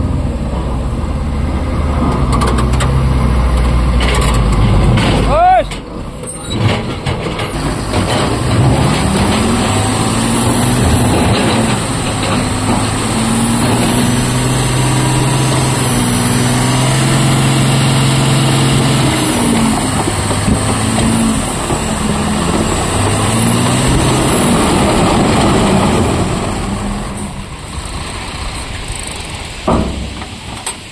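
A loaded BharatBenz dump truck's diesel engine running, with a sharp air-brake hiss and short squeal about five seconds in. The engine is then held at raised revs for about twenty seconds while the hydraulic hoist tips the body up, and it drops back near the end as the body reaches full lift.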